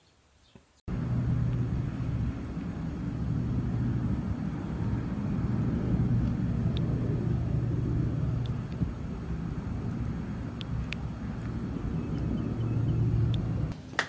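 A steady low rumble with a faint hum that starts abruptly about a second in and cuts off just before the end, with a few faint clicks over it.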